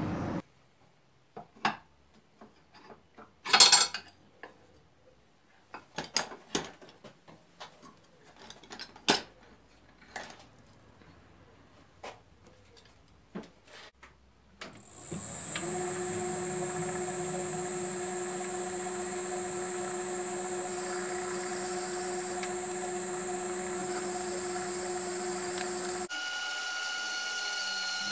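Scattered light metal clicks and knocks from handling a pulley and vise. About halfway in, a geared-head metal lathe starts and runs steadily with a high whine. Near the end its tone changes and it drops in level.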